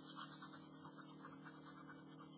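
Pencil shading on sketchpad paper: faint scratchy strokes rubbed back and forth, about five a second, over a low steady hum.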